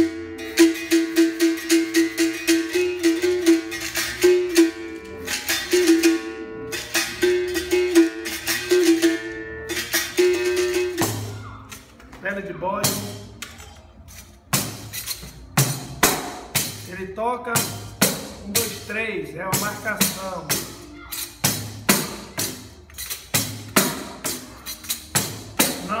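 Berimbau played in a steady rhythm: the steel string is struck with a stick and rings on two alternating notes, with rapid rattling strikes alongside. About eleven seconds in this pattern stops and a sparser run of sharp struck notes follows, their ringing rising and falling in tone.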